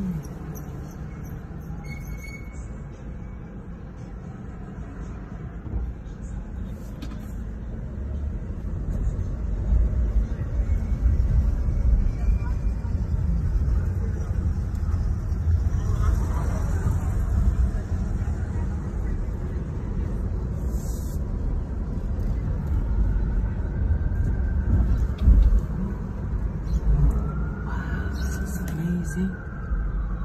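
Car cabin road noise: a low engine and tyre rumble, quieter while the car is stopped and louder from about eight seconds in as it drives off, with city traffic outside.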